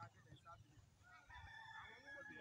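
Faint, distant rooster crowing: one long held call starting a little past halfway, over faint far-off voices.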